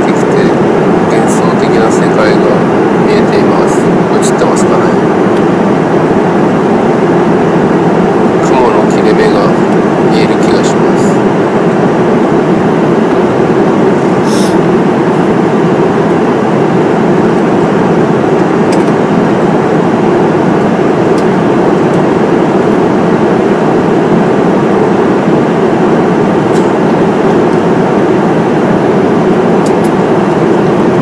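Steady, loud jet airliner cabin noise, the rush of engines and airflow heard from a window seat as the plane flies its approach through cloud.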